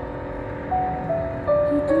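A woman sings held, stepping-down notes into a handheld microphone over sustained backing chords, amplified through a street PA. The singing grows louder near the end, over a low rumble of road traffic.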